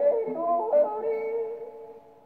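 A male yodel with accompaniment, played from a shellac 78 rpm record on a portable wind-up gramophone. Quick leaping notes give way to a long held note that fades near the end.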